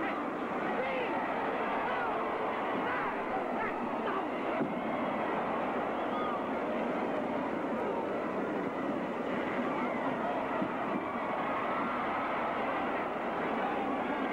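Wrestling arena crowd: many voices shouting and calling out at once in a steady din, heard on an old, thin-sounding film soundtrack.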